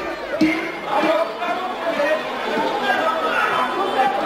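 A man talking on a stage over his microphone, with audience chatter behind.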